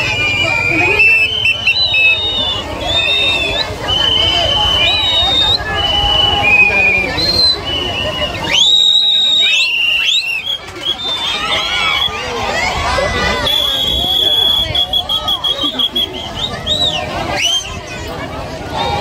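Whistles blown again and again over crowd chatter: short, shrill held notes at shifting pitches, steep upward glides a little past halfway, and a long trilling blast around three-quarters through.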